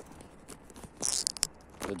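Handling noise on a phone being moved about: a short scratchy rustle with a few sharp clicks about a second in. A man's voice starts just before the end.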